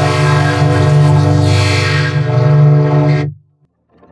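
Loud, sustained horn-like chord from an effects-distorted logo soundtrack, holding one steady pitch, then cutting off suddenly about three and a half seconds in.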